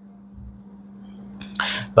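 A short, sharp breath drawn in by a man just before he speaks, over a faint steady electrical hum.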